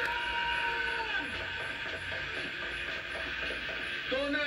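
Film soundtrack from a VHS tape playing through the TV's speaker: a steady hiss like rain with faint clattering sounds and a held tone in the first second.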